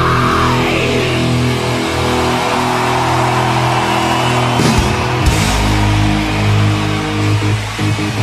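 Live heavy rock band playing: distorted electric guitars and bass hold steady chords, shifting to a deeper chord about five seconds in.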